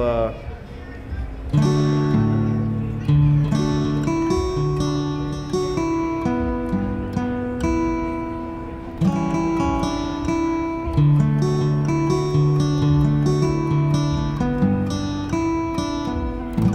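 GarageBand acoustic guitar sound driven by a Zivix Jamstik MIDI guitar controller, playing a run of strummed chords that ring on and change every second or two, starting about a second and a half in.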